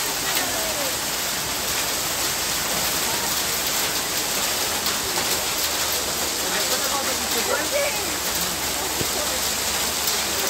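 Heavy rain mixed with hail falling on a street, a dense steady hiss with many small sharp pattering impacts.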